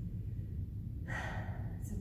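A woman draws an audible breath in, about a second in, just before she speaks, over a steady low room rumble.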